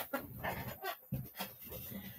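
A dog making a string of short, faint, irregular sounds.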